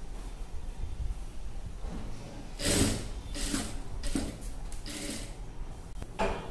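Cloth rustling in several short bursts as embroidered dress fabric is shifted and laid out by hand at a sewing machine, over a low steady hum.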